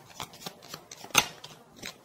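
Tarot cards being handled on a table: a string of short, sharp clicks and snaps of card stock, the loudest just over a second in.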